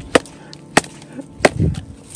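A wooden club struck down onto a tree stump, three sharp whacks about two-thirds of a second apart, splintering the stump.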